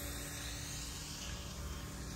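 Faint steady outdoor background noise: a low rumble under an even hiss, with no distinct event.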